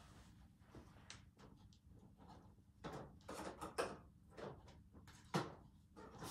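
Faint scattered clicks and knocks of craft supplies being picked up and set down in a search for a bottle of clear craft glue. Most of them come together about three to four seconds in, with one more sharp knock near the end.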